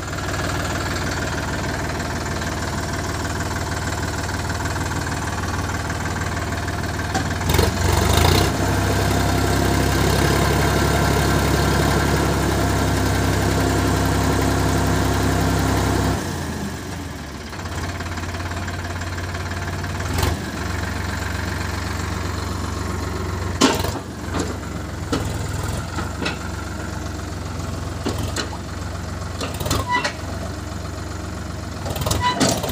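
Sonalika DI 50 RX tractor's diesel engine running steadily while its hydraulics tip a loaded trolley. The engine runs louder for several seconds in the middle, then drops back, with a few sharp knocks in the second half as the tipping load of rocks and earth shifts.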